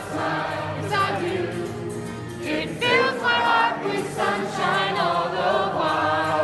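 Many voices singing together with music, a roomful of people singing along.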